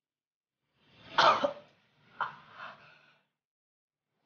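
A man crying out in pain: one loud strained cry about a second in, then two shorter, weaker ones.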